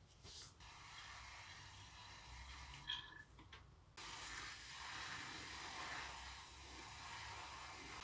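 Water spray lance hissing as it wets compost in seed trays to saturate it: a steady spray, a short break about three seconds in, then spraying again.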